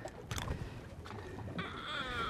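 Low background wind and water noise on an open boat, with one sharp click about a third of a second in and, near the end, a short wavering high-pitched cry lasting under a second.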